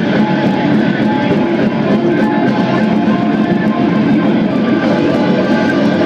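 Black metal band playing live: distorted electric guitar and drums in a loud, dense, unbroken wall of sound.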